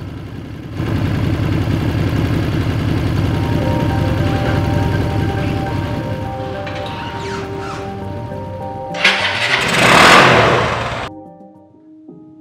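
Motorcycle engine running at idle, its rapid firing pulses jumping up in level about a second in, under music tones. Near the end a loud whoosh swells up and cuts off suddenly, leaving only the music.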